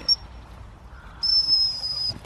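Gundog whistle: a short high pip right at the start, then one long, steady, shrill blast from a little past a second in, signalling a Labrador running back across the field.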